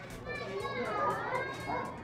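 Background voices of people in a restaurant dining room, with a higher voice, which sounds like a child, gliding up and down about halfway through.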